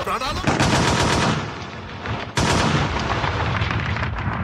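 Recorded machine-gun fire sound effect played over stage loudspeakers as part of a dance soundtrack: a rapid burst of shots starting about half a second in, a quieter stretch, then a second burst from a little past halfway.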